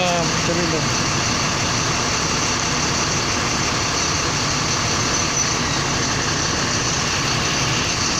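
A parked coach bus idling close by, a steady, unbroken drone.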